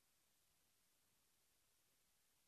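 Near silence: only a faint, even hiss, because the recording's sound track dropped out at this point.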